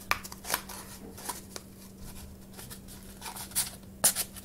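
Empty cardboard toilet-paper tubes being squeezed in and pushed into one another: a string of short, dry cardboard scrapes and crinkles.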